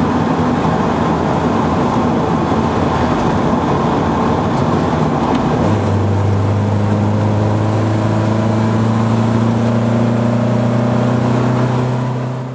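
Mercedes 190E Cosworth's 16-valve four-cylinder engine, converted to throttle-body fuel injection, running at steady revs while its fuel map is tuned on a programmable ECU. About halfway through, its note settles into a stronger, steadier tone.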